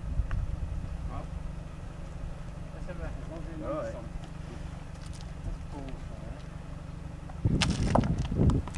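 Wind buffeting the microphone, a steady low rumble, with distant men's voices talking faintly now and then. Near the end the rumble swells into a louder burst with crackle.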